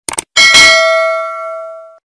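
Subscribe-animation sound effect: two quick mouse-click sounds, then a notification bell chime struck about half a second in that rings and fades away.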